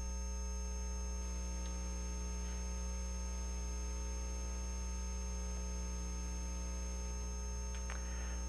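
Steady low electrical mains hum, with nothing else over it.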